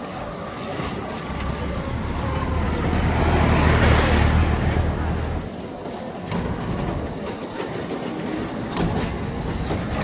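Road traffic heard from a moving bicycle: a motor vehicle's deep rumble swells as it passes close, at its loudest about four seconds in, then drops away about a second and a half later, leaving lighter street noise.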